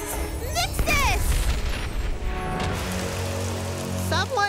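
A low rumbling boom of a cartoon magic-spell sound effect, fading after about two seconds, under background music, with a brief voice-like sound near the start.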